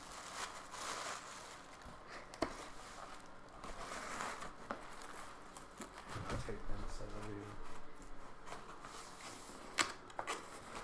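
Tissue paper crinkling as it is packed into a cardboard box and the box is closed, with a couple of sharp knocks, one about two and a half seconds in and one near the end.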